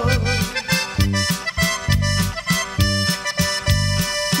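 Norteño band's instrumental break: accordion playing sustained notes over a steady bass and drum beat.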